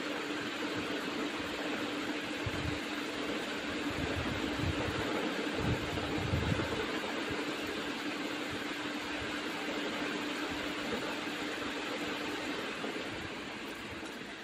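Steady background hiss with a faint steady hum that drops out shortly before the end, and a few soft low thumps in the first half: room noise between narrated lines.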